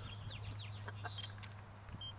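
Birds chirping faintly: a string of short, quick calls in the first second or so, over a steady low hum.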